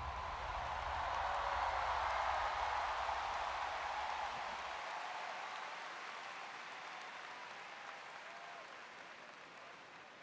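Large stadium crowd applauding and cheering, slowly fading out. A low rumble underneath stops about five seconds in.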